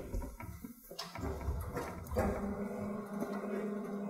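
Quiet lecture-hall room tone with a few faint footsteps as the lecturer walks along the blackboard. A steady low hum comes in about halfway through.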